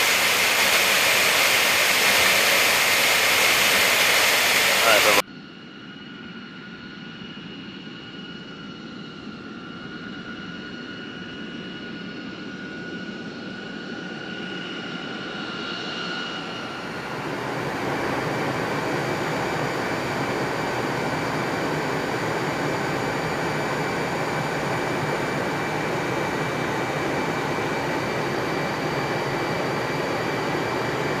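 Jet engine noise from a B-52 bomber's turbofans, heard across several cut-together shots. A loud, steady noise stops suddenly about five seconds in. A quieter, steady turbine whine with two high tones follows and slowly grows louder. From about seventeen seconds a broader, steady jet noise runs on.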